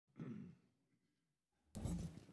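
A man's breath picked up by the pulpit microphone, a short rush near the end just before he speaks, after a brief faint low sound near the start.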